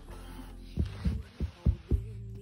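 A quick run of about five low, muffled thumps on the microphone in the second half, over a low hum and faint background music.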